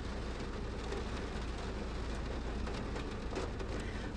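Steady background noise with no distinct events: an even hiss with a low hum beneath it, the room tone of a home voice recording.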